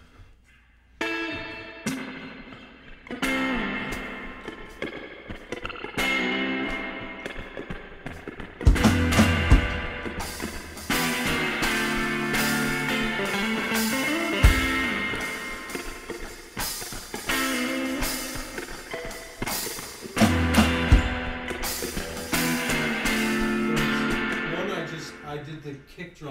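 Guitar playing a repeating intro riff of chords, starting about a second in, with a few deep thumps under it near the middle and later on.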